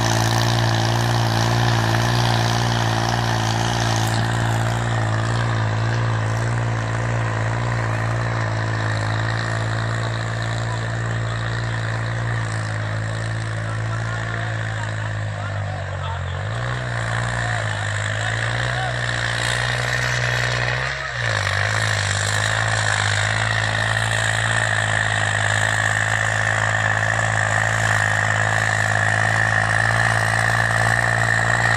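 Tractor diesel engine running steadily under load while pulling a harrow, its pitch dipping briefly twice, about halfway through and again a few seconds later.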